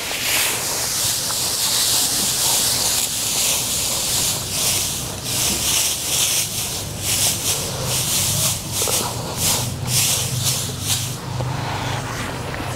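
Dry rice straw rustling and crackling as it is spread by hand as mulch over a planted bed, close to a clip-on microphone. The rustle is continuous, with sharper crackles through the second half.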